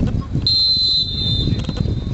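Referee's whistle blown once, one steady blast of about a second that fades away, signalling that the penalty kick may be taken.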